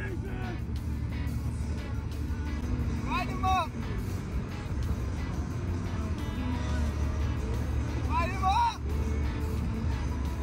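Steady low road and engine rumble of a car driving on a highway, heard from inside the cabin. Background music plays over it, with two short voice-like phrases about three seconds and eight seconds in.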